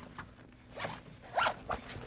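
A zipper pulled in two or three quick strokes, about a second in.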